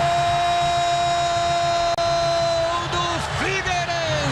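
A man's voice, the match commentator, holding one long, steady shouted note for about three seconds, then breaking into short falling calls.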